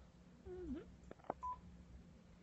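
Two soft clicks of the phone being handled, followed by one short, faint electronic beep.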